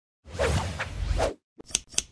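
Edited intro sound effect: a whoosh lasting about a second, then two short sharp clicks in quick succession.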